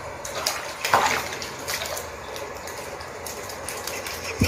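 Water splashing and sloshing in a shallow plastic tub as a puppy wades in it, with a louder splash about a second in.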